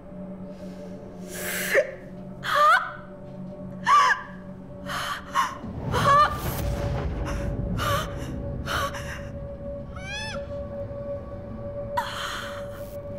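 Film sound design for a vision: a held drone under a rapid series of sharp, gasp-like whooshing hits with swooping pitch, the first three the loudest, and a low rumble swelling in about halfway through.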